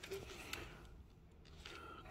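Near quiet: faint room tone with a couple of faint ticks, likely from handling.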